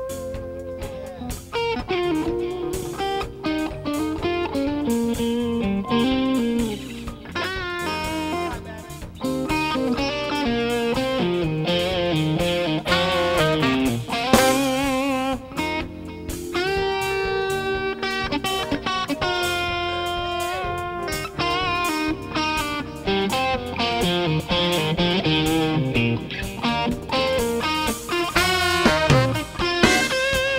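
Live band playing with an electric guitar taking a solo: a melodic lead line with bent and wavering notes over bass and drums.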